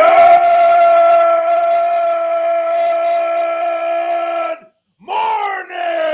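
A man's voice holds one long, steady yell for about four and a half seconds. After a short break come two shorter yells that fall in pitch.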